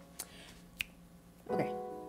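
Piano intro of a slow ballad: a held chord fades away, two sharp clicks come about half a second apart, and a new chord is struck about a second and a half in.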